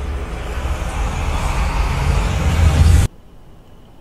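Intro sound effect: a rumbling whoosh that swells louder, then cuts off suddenly about three seconds in.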